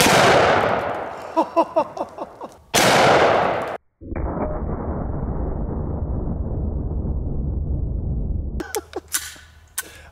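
Magnum Research Desert Eagle .50 AE pistol firing: one loud shot with a long echoing decay, and a second loud blast about three seconds in. After that comes a steady low rushing noise lasting several seconds, then a few sharp clicks near the end.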